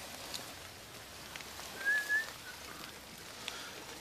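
Faint, steady outdoor hiss among trees, with a single short, slightly rising bird chirp about halfway through and a few faint ticks.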